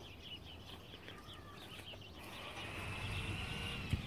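Small birds chirping in quick, repeated high notes, with a thin steady whistle-like note near the end. A low rumble of wind on the microphone grows from about halfway through.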